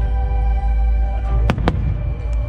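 Two sharp firework cracks in quick succession about one and a half seconds in, over a low rumble and steady music with sustained tones.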